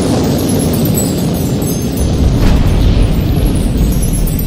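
Loud cinematic intro sound effect: a dense, deep rumbling boom whose low end swells about halfway through.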